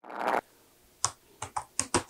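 Keys of a laptop keyboard being typed on: a run of separate clicks starting about halfway in, some in quick pairs. A short soft rush of noise comes first, right at the start.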